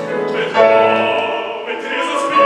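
Opera music: singing voices holding sustained notes over accompaniment, moving to a new phrase about half a second in.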